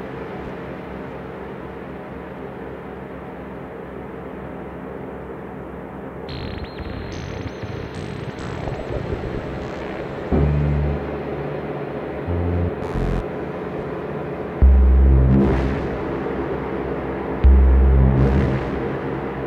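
Ambient electronic music from an Elektron Digitone FM synthesizer played through a Death By Audio Rooms stereo reverb pedal: a sustained reverberant drone, with a high tone stepping upward about six seconds in. Deep bass notes come in about ten seconds in, and louder ones in the last few seconds.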